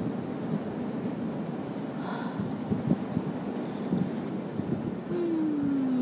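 Wind rumbling on the microphone over the wash of the ocean, with a couple of low knocks in the middle. Near the end a person gives a short falling hum.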